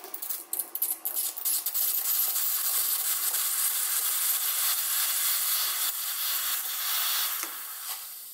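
Capresso EC Pro espresso machine's stainless steam wand blowing steam into the drip tray: it sputters and crackles at first, then settles into a steady loud hiss that eases off near the end.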